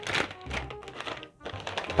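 Faint background music with the rustle and light knocks of a foil snack bag being torn open and handled.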